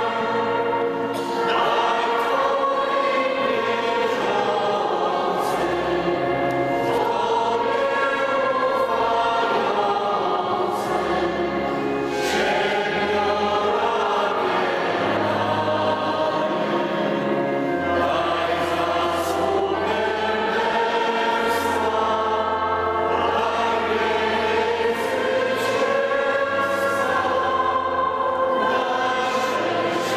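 A congregation singing a slow hymn together, with steady held low notes beneath the voices.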